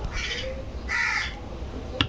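A crow cawing twice in the background, two short harsh calls about a second apart.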